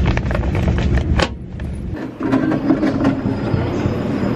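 Passenger train running, heard from inside the carriage as a steady low rumble, with a sharp click about a second in. Partway through it gives way to a lighter train ambience with steady tones as passengers move through the vestibule toward the door.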